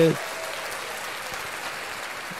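A man's word cuts off just after the start, followed by a steady hiss of background noise with no other distinct sound.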